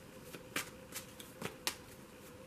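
A tarot deck being shuffled by hand: a few short, soft card clicks at uneven intervals, spaced roughly half a second apart.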